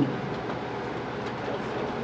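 Steady, even background noise with no speech and no distinct events.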